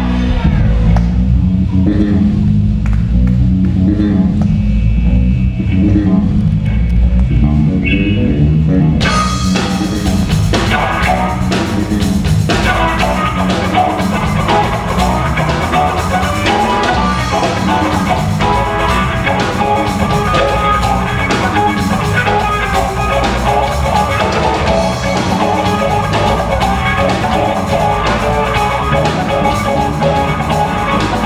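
Live electric blues band playing instrumentally: electric guitar, electric bass, drum kit and keyboard. For about the first nine seconds the sound sits mostly low, then the higher instruments come in suddenly, and about three seconds later the full band plays loud and dense.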